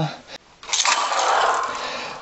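A singer's breath between sung lines, a pitchless hiss lasting about a second, just after a sung note falls away at the start.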